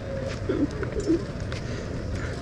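Steady outdoor background noise, with a few faint, short low sounds about half a second and a second in.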